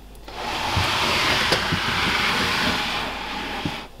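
Plastic snake tub being slid out of its rack shelf: a steady scraping rush of plastic on the shelf lasting about three and a half seconds, with a few small knocks.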